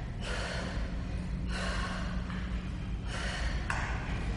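A woman breathing hard and audibly from exertion, a few long breaths in and out over a steady low hum.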